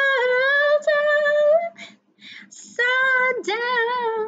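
A woman singing a cappella, holding a long sustained note for almost two seconds, then taking a breath and starting another drawn-out sung phrase about three seconds in.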